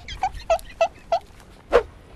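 An animal's short, high calls, five in quick succession about three a second, then one louder call that falls in pitch.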